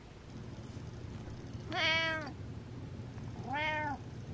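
Ginger-and-white domestic cat meowing twice, a longer meow about two seconds in and a shorter one near the end, each rising then falling in pitch.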